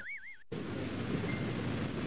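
A warbling, wobbling whistle-like sound effect trails off and stops about half a second in, followed by a steady soft hiss of background noise.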